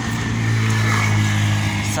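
Motorcycle engine running with a steady low hum that holds one pitch throughout.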